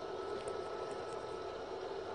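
Older Ecotec A3 pellet burner on a wood boiler running steadily at near full output: an even, low hum with no sudden sounds.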